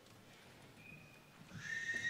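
Quiet hall ambience, then near the end a high held note from a musical instrument swells in, the first sound of the music that follows the reading.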